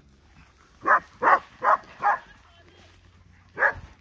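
A dog barking four times in quick succession, then once more near the end, as the dogs chase cattle.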